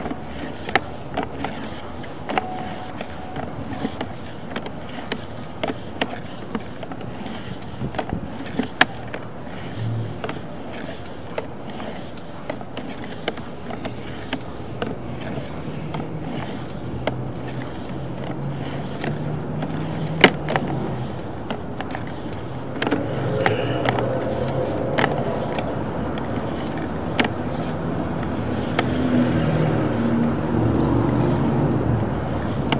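Sewer inspection camera's push cable being pulled back out of the line, with frequent irregular clicks and knocks over a steady low rumble that grows louder in the last several seconds.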